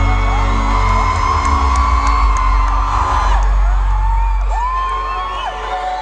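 Live concert music over the arena sound system: a held chord over deep bass, thinning out about halfway through, with fans screaming and whooping over it.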